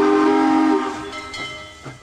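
Train horn sounding a steady chord of several tones, loud at first and fading away over about two seconds.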